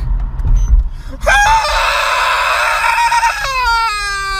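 A voice imitating a police siren wail. About a second in it jumps to a strained, held high note, then glides down in pitch near the end, over the low rumble of the car.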